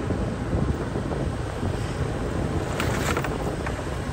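Wind buffeting the microphone over a steady low rumble from a vehicle moving along a street, with a brief hiss about three seconds in.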